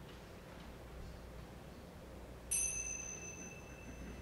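A pair of small tingsha-style hand cymbals struck together once, about two and a half seconds in, leaving a clear high ring of two steady tones that fades slowly.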